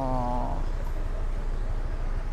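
A man's voice holding a drawn-out, steady 'naa' for about the first half second, then a steady low rumble of background noise with no distinct events.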